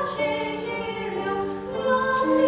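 Classical soprano singing with grand piano accompaniment. A sung phrase ends at the start, the piano carries on more softly for a moment, and the voice comes back in near the end.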